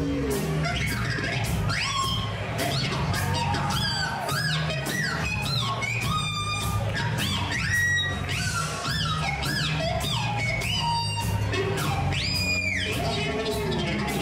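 Live electric guitar through an amplifier: high squealing notes that swoop up and down in pitch, over a fast, even drum beat and a steady low bass line.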